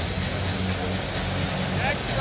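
Hockey arena ambience during a stoppage in play: a steady crowd murmur over low, steady background music from the arena's sound system.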